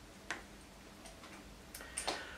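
A quiet pause with two faint clicks, one shortly after the start and one near the end.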